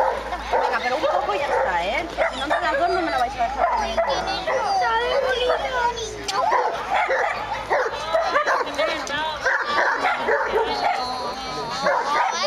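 Young pit bull puppy whining and yipping over and over while being held and handled, with quick high-pitched cries.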